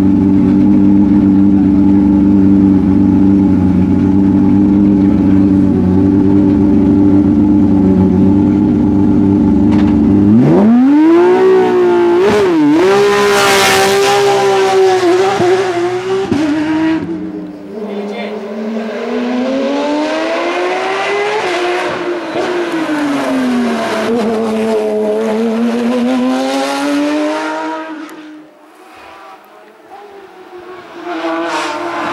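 Porsche 911 race car's flat-six engine idling loudly close by, then launching about ten seconds in and revving hard up through the gears. Later it is heard from further off, its note rising and falling through the bends, and it fades near the end.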